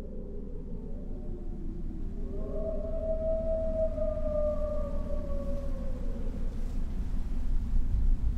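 Ambient soundtrack drone: a low rumble swelling steadily in volume, with one long tone that slides up about two seconds in, holds for a few seconds and fades away.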